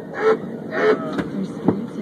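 Inside a shuttle bus: a low steady engine rumble, with two short snatches of voices early on and two sharp clicks in the second half.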